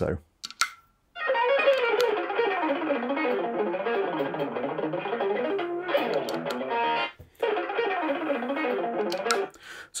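Electric guitar playing fast palm-muted legato lines, a rapid stream of notes. The playing breaks off briefly a little after seven seconds and then carries on.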